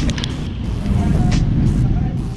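Loud roadside noise: a vehicle engine running, mixed with music and voices.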